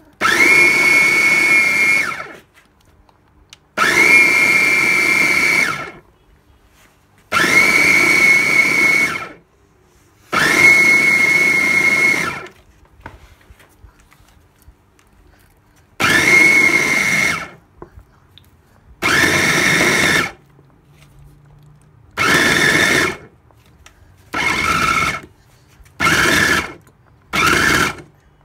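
Electric fufu blender's top-mounted motor run in pulses: ten separate bursts of motor whine, each rising quickly to speed and stopping sharply. The first bursts last about two seconds and the later ones grow shorter, down to about a second near the end.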